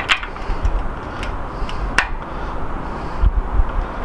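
Spoke key turning spoke nipples while truing a bicycle wheel: two sharp clicks about two seconds apart, with a few fainter ticks, over a low background rumble.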